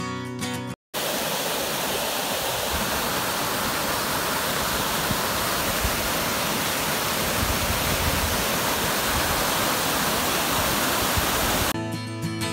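A waterfall pouring over rocks, a steady, even rush of water. Strummed guitar music plays at the very start, cuts off into a moment of silence just under a second in, and comes back right at the end.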